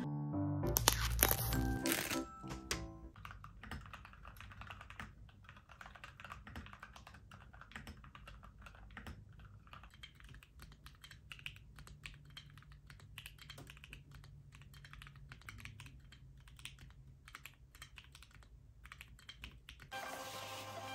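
Fingers typing quickly on a small mechanical number pad, a dense run of key clicks from about three seconds in, over soft background music that is louder in the first few seconds.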